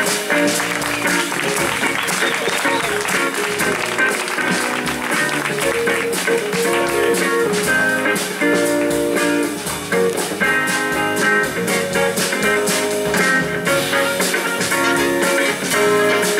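A live jazz-funk band playing, with electric guitar to the fore. Audience applause sounds over the music in the first few seconds.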